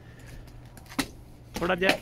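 Faint steady background with one sharp click about a second in, then a person talking.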